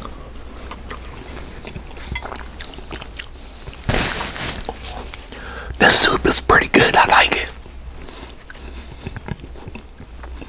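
Close-miked chewing of a mouthful of tortellini and sausage soup, with soft wet mouth sounds. A breathy burst comes about four seconds in, and the loudest part is a short spell of voice from about six to seven and a half seconds in.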